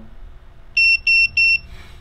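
Small electronic buzzer giving three short high beeps in quick succession, all at the same pitch. The sound comes as the quad's flight controller reboots after the CLI paste.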